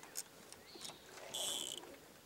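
Bowfishing reel's drag buzzing for about half a second, past the middle, as the hooked gator gar pulls line; a few small clicks come before it.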